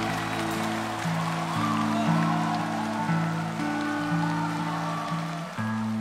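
Instrumental passage of a slow ballad between sung lines: strummed acoustic guitar over sustained low backing notes, the chords changing every second or so.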